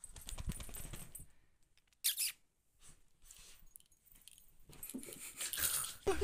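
A long-haired dog moving on bedding with the phone pressed against its fur: irregular rustling and scratchy handling noise, with a short sharp noise about two seconds in.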